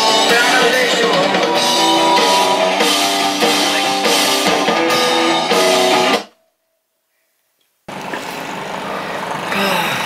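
A rock song with guitar, drums and singing, which cuts off suddenly about six seconds in. After a second and a half of silence, the steady noise of a car's cabin on the road comes in.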